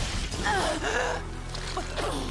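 A sudden hit, then an animated character's pained gasp and strained breath over background music.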